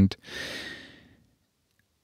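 A person's audible breath between sentences, lasting just under a second and fading away.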